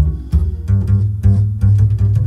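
Upright bass played pizzicato, a steady line of plucked notes about three a second, heard solo through the large-diaphragm condenser microphone placed in front of the f-hole, the mic chosen for a fuller, rounder bass tone.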